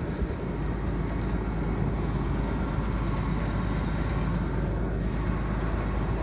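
Case IH Magnum tractor's diesel engine running steadily at idle, a low continuous drone.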